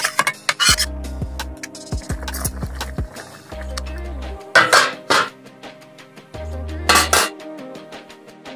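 A metal spoon or ladle clinking and scraping against a steel kadai, with loud clatters about halfway through and near the end, over background music.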